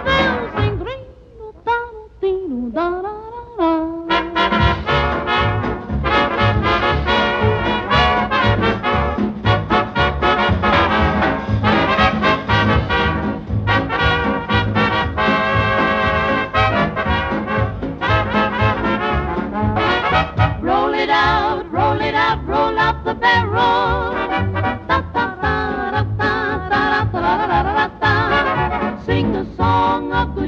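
Swing-era dance band with brass playing an instrumental polka passage. A thinner, quieter stretch with sliding notes in the first few seconds gives way to the full band over a steady beat.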